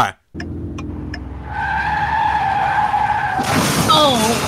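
Staged car crash sound effect: a car engine running, then tyres screeching for about two seconds, ending in a loud crash about three and a half seconds in.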